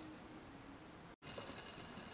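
Faint room hiss with a low hum, then, after a sudden break a little past halfway, faint small clicks from a Corgi die-cast toy helicopter being handled as its plastic rotor is spun by hand.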